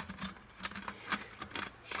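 Straightened steel coat-hanger wire being worked through a small drilled hole in a plastic five-gallon bucket, with a string of light irregular clicks and scrapes as the wire rubs the plastic and the aluminium beer can on it.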